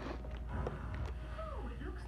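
Cartoon character dialogue playing from a television's speakers, picked up across the room, over a steady low hum.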